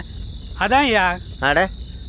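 Crickets chirring steadily in a night-time outdoor ambience, a continuous high-pitched tone. A man's short voiced sound cuts in about half a second in and again near the middle.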